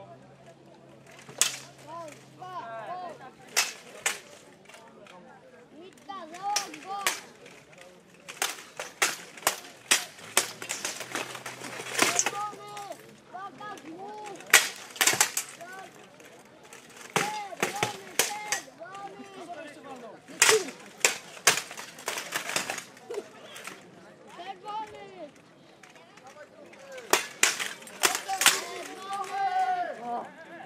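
Steel longswords clashing against each other and striking plate armour in an armoured sword duel: irregular sharp metallic clangs, often several in quick succession, with voices in the background.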